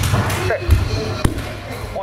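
An aikido breakfall on tatami mats: the thrown partner's body lands with dull thuds, and a single sharp slap on the mat comes about a second and a quarter in.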